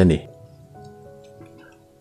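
Soft background music with held, slowly changing notes, heard in a pause after a narrating voice breaks off just at the start.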